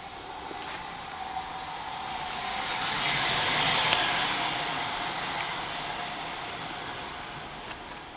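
A road vehicle driving past: tyre and engine noise grows to its loudest about three to four seconds in, then fades away.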